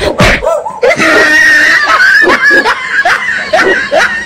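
A person laughing loudly and shrieking, in a string of short bursts, with a long high-pitched squeal held for about a second and a half near the middle.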